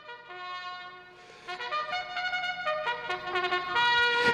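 A trumpet playing a series of held notes, soft at first and louder from about a second and a half in.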